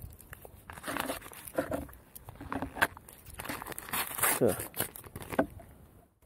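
A foil sachet being pulled open by hand: irregular crinkling and tearing of the foil in short bursts.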